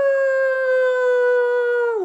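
A woman imitating a siren with her voice: one long wailing note that sinks slowly in pitch, then dips at the end as the next rising wail begins.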